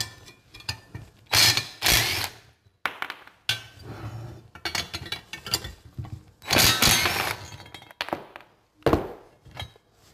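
Cordless drill with a socket running in short bursts, spinning nuts off the bolts of a steel grapple assembly, with clinks and knocks of steel parts being handled in between. The two loudest bursts come about a second and a half in and near seven seconds, with a sharp knock near the end.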